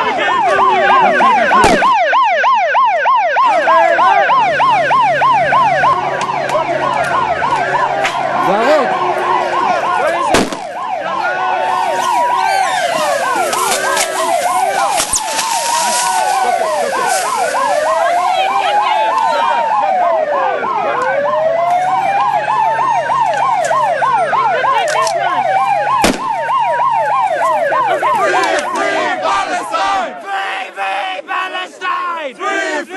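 Two or more vehicle sirens sounding at once, one in a fast yelp and another in a slower rising-and-falling wail. A few sharp bangs cut through: near the start, about a third of the way in, and near the end.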